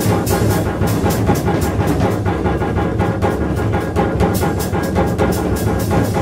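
Live free-jazz trio of saxophone, double bass and drums playing, with dense, rapid drum and cymbal strokes over a busy double bass line.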